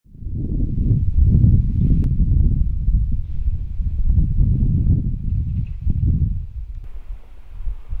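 Wind buffeting the microphone: an irregular, gusting low rumble that fades in at the start. Near the end it drops away, leaving a faint steady hiss.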